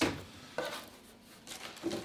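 Cardboard box and packaging handled as an item is put back into it: a sharp knock at the start, a smaller knock about half a second later, then faint rustling.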